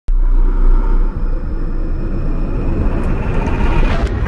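Cinematic logo-intro sound effect: a deep rumble that cuts in abruptly, with a rising hiss and faint tones swelling to a peak near the end as it builds toward a hit.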